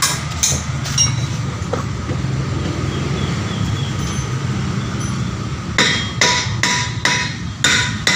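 A steady low hum, then from about six seconds in a run of sharp, ringing metallic hammer blows, a bit more than two a second.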